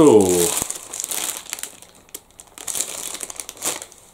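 Plastic snack packaging crinkling as it is handled, in irregular bursts with short pauses between them.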